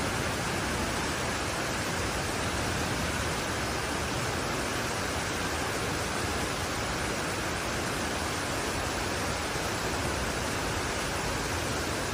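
Torrential rain downpour: a steady, unbroken hiss.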